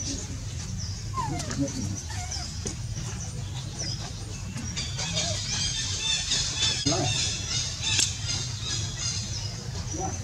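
Young macaques squeaking and squealing in short gliding cries. A high chirp repeats about once a second over a steady low rumble, and thicker high chattering fills the second half.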